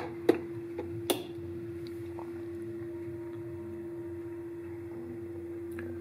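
Three sharp clicks in the first second or so, like computer mouse clicks skipping a song forward. A steady single-pitched hum sounds throughout.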